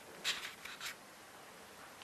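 A pause in a man's speech: quiet room tone, with a few faint short clicks or scrapes in the first second.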